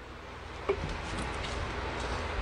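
Steady low hiss of jjukkumi bokkeum (spicy stir-fried webfoot octopus) heating in an electric pan, with one light knock of a serving spoon against the pan less than a second in.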